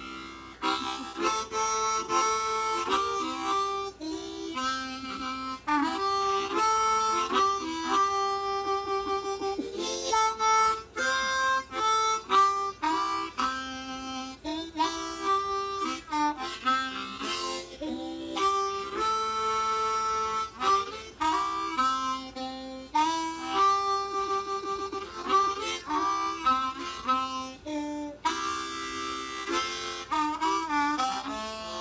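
Blues harmonica played solo, cupped in both hands: a melody of held notes and quick runs, with bent notes that slide in pitch.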